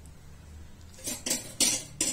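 Spoon scraping and knocking against the side of a stainless steel pressure cooker as stirring begins, in two short noisy strokes in the second half.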